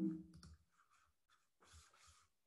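Faint scattered clicks in a quiet room, after a brief low murmur right at the start.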